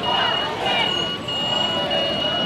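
Street noise of traffic and voices, with a steady high-pitched tone running through it that breaks off briefly a few times.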